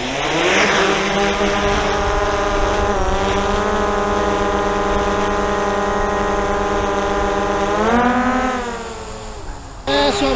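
DJI Mavic 2 Zoom quadcopter's motors and propellers spinning up for takeoff: a steady multi-tone buzzing whine that rises in pitch as it lifts off. It dips slightly about three seconds in, rises in pitch again around eight seconds in, then fades near the end as the drone climbs away.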